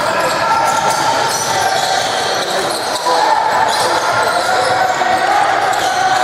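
Basketball being dribbled on a hardwood gym court during live play, with players' footsteps and voices in the echoing hall.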